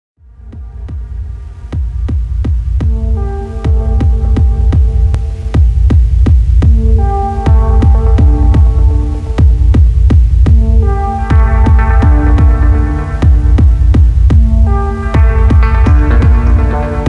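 Techno music fading in over the first few seconds: a heavy deep bass line under a steady beat of sharp hits, about two a second, with a repeating synth melody on top.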